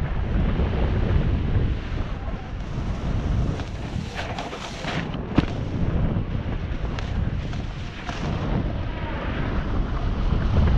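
Wind buffeting the microphone of a camera on a snowboarder riding down a groomed slope, a steady low rumble, with the board scraping and hissing over the snow. The hiss comes through most clearly about four to five seconds in, and a single sharp knock follows.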